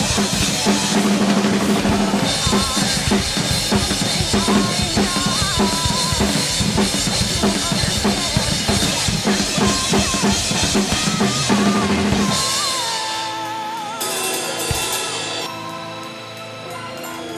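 Acoustic drum kit played hard along to the recorded song: bass drum, snare and cymbals driving steadily under the song's melody. About twelve seconds in the drumming stops and the song carries on alone, quieter.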